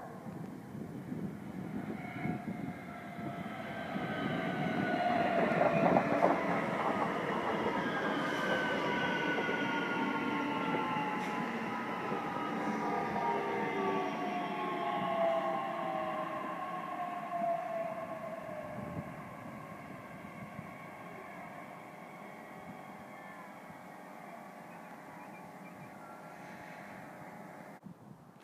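Two coupled Bombardier Talent 2 electric multiple units arriving: the running noise builds over the first few seconds, then the electric drive whines fall steadily in pitch as the train slows, until a steadier, quieter hum is left in the last few seconds.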